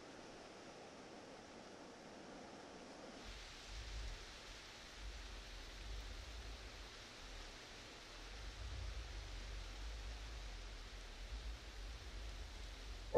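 Faint outdoor ambience of wind in trees, an even steady hiss. About three seconds in, a low rumble of wind on the microphone joins it and carries on.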